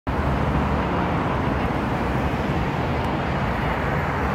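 Steady city traffic noise: a continuous wash of passing cars with a low engine hum beneath it.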